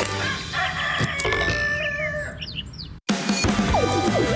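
A TV show ident with a rooster crowing for about two seconds over a music bed, followed by a few short bird chirps. The sound cuts out briefly about three seconds in, then music starts again.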